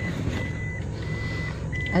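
Vehicle reversing alarm: a steady high beep about half a second long, repeating every two-thirds of a second, over the low rumble of an idling engine.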